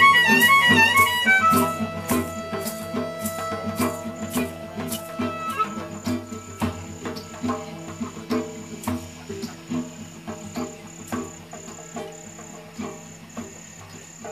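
A live acoustic band fading out: a harmonica warbles and then holds a long note that stops about five and a half seconds in, while an acoustic guitar keeps picking quietly. From about six seconds in, a cricket chirps in even pulses about twice a second.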